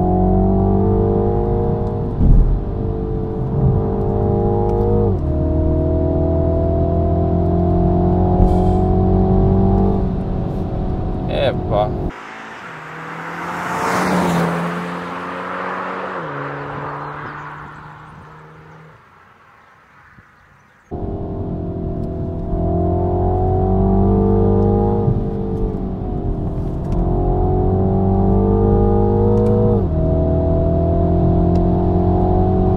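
2022 Mini John Cooper Works' turbocharged 2.0-litre four-cylinder heard inside the cabin, pulling hard up through the gears: the engine note climbs and then drops sharply at each shift. Much of this cabin sound is played through the car's audio speakers. About twelve seconds in, the car is heard from outside instead: one rush as it goes by, then its engine fading away in a few falling steps of pitch, before the in-cabin engine note returns, climbing through several more gears.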